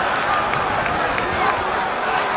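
Football stadium crowd: a steady din of many spectators' voices.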